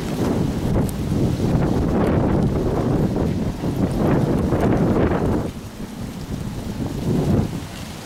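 Wind buffeting the microphone, a gusty low rumble that eases about five and a half seconds in.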